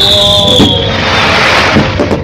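Fireworks: a high whistle drifting slightly down in pitch that fades before the one-second mark, then a loud rushing hiss.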